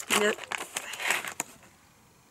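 Foil treat bag crinkling and crackling with small clicks as it is handled, fading out about a second and a half in.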